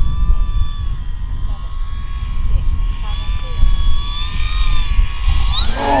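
Electric radio-controlled model plane's motor and propeller whining steadily, rising in pitch near the end as the plane comes in low. Wind rumble on the microphone runs underneath.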